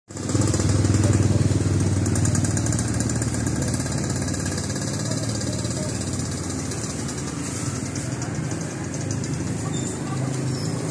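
Small motorcycle engine running at a steady idle, loudest in the first couple of seconds and then slowly fading.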